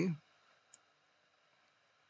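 The tail of a spoken word, then a single computer mouse click about three-quarters of a second in, then faint room tone.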